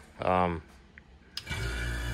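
A click, then a sputter coater's mechanical vacuum pump starting about one and a half seconds in and running with a steady low hum as it begins pumping the air out of the chamber.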